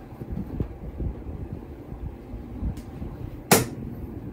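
Soft thumps and handling noise as someone moves about and picks up fabric, with one sharp knock about three and a half seconds in.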